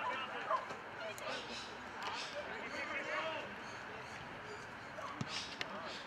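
Indistinct shouting and calling from footballers and onlookers across the ground, with a couple of short knocks, the clearest about five seconds in.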